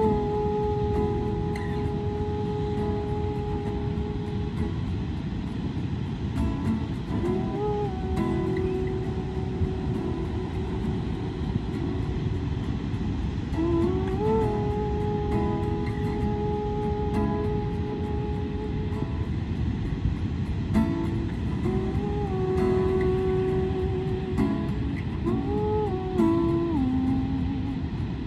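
Acoustic guitar strumming under long held wordless vocal notes that slide up into pitch, several times over, with a steady rush of surf and wind underneath.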